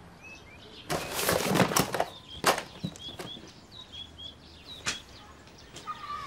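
Someone handling the contents of an open suitcase: about a second of loud rustling and knocking, then single sharp clicks about two and a half and five seconds in. Small birds chirp repeatedly in the background.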